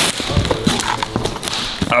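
Plastic packing straps on a foil-wrapped cardboard box being cut with a knife, giving a few sharp clicks and knocks with rustling of the wrapping.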